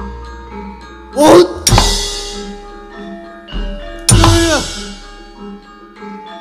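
Javanese gamelan accompaniment with metallophones sounding steady notes. A sharp metallic crash rings out about one and a half seconds in and again about four seconds in, each with a loud shouted cry.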